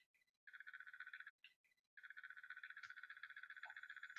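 Near silence with a faint, rapid high-pitched trill that breaks off after about a second and resumes about a second later.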